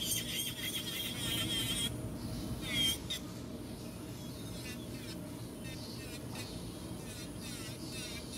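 Hand nail file rasping back and forth across the tip of a powder-built artificial nail in quick, even strokes, busiest in the first couple of seconds, then lighter.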